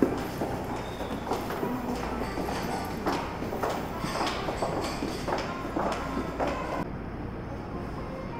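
Footsteps of shoes on a hard tiled floor, about two a second, against a murmur of background voices. They stop about seven seconds in.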